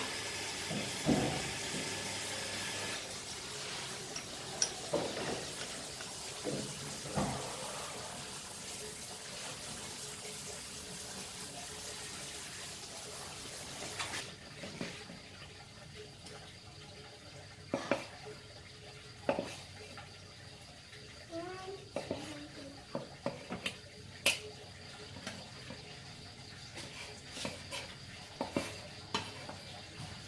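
Metal spoon scraping and clinking against a ceramic bowl while peeling charred eggplant, then a knife cutting through roasted eggplant onto a wooden chopping board, with scattered sharp knocks of the blade and tongs on the board.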